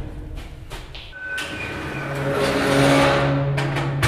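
A barred metal cell door sliding along its track with a steady low hum, swelling louder about three seconds in.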